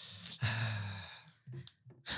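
A long, breathy sigh into a close microphone, trailing off after about a second and a half.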